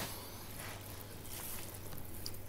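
Faint wet scraping of a long knife sliding between salmon skin and flesh as the last of the skin comes away, over a low steady hum.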